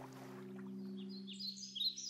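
Faint birds chirping: a string of short, high chirps begins about a second in, over a low steady drone.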